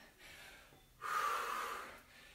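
A woman's breath out through the mouth about a second in, lasting close to a second, breathing hard from exertion while lifting dumbbells.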